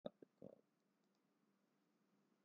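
Near silence: faint room tone with a low hum, after three brief soft knocks in the first half second.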